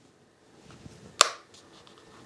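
A single sharp click about a second in, the magnetic clasp of a small grooming-kit case snapping, with faint handling rustle around it.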